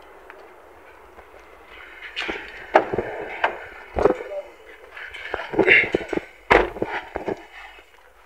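Indistinct voices talking, with several sharp knocks and thumps from handling the car as someone moves from the engine bay into the driver's seat.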